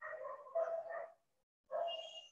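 Several short animal calls in quick succession, with a gap before the last one near the end, fainter than the teacher's voice.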